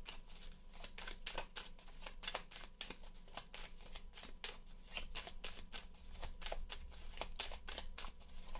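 A deck of oracle cards being shuffled by hand, overhand, from one hand to the other: a quiet, continuous run of soft card slaps and clicks, several a second.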